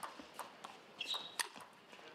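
Table tennis rally: about six sharp clicks of the ball off the rackets and table, a few tenths of a second apart, with a brief high squeak about a second in.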